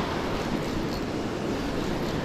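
Steady wash of breaking surf with wind rumbling on the microphone.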